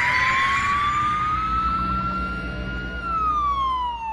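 Emergency-vehicle siren wailing: one slow rise in pitch over about three seconds, then falling away near the end, over a low rumble.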